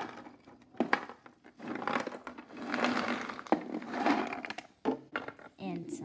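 Frosted Mini-Wheats poured from a clear plastic container into a plastic cereal bowl: a dense rattle of dry pieces lasting about three seconds. It follows a couple of knocks from handling the container.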